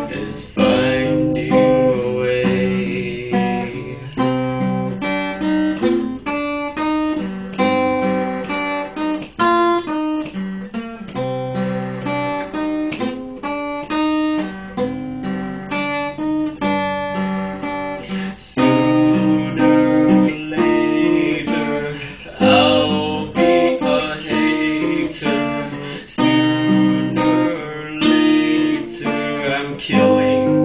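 Solo steel-string dreadnought acoustic guitar playing an instrumental passage of picked notes and chords. It grows fuller and louder a little past halfway.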